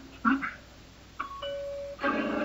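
A short pitched squeak from a logo jingle, then a two-note electronic chime like a doorbell: a brief higher note, then a longer lower one. The jingle has been run through a distorting audio effect.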